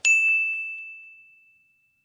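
A single bright ding sound effect on a high tone, the chime of a "+1 Like" button animation, ringing out and fading away over about a second and a half.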